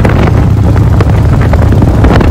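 Loud wind buffeting and rushing over a phone's microphone on a moving motorcycle, a dense low rumble with rapid irregular gusts throughout.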